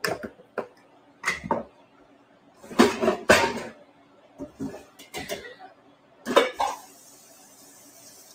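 Kitchen clatter: dishes and utensils knocked and set down in a handful of sharp clanks, the loudest about three seconds in, followed near the end by the steady hiss of a tap running at the sink.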